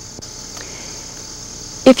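Steady, high-pitched insect chorus, with a woman's voice starting a word near the end.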